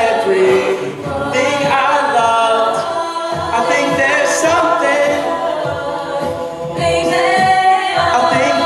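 Mixed-voice a cappella group singing a pop song in close harmony: stacked held chords with a steady low beat pulsing underneath.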